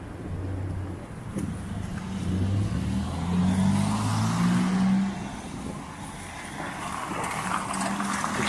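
A car driving past on the street close by: its engine hum and tyre noise grow, are loudest about three to five seconds in, then fade.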